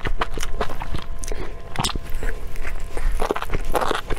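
Close-miked chewing of chili-oil-coated enoki mushrooms: an irregular run of short, wet clicks and smacks, with a fresh bite near the end.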